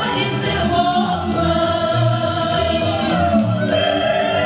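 A group of voices, mostly women's, singing a folk song together with long held notes over a bass-line accompaniment.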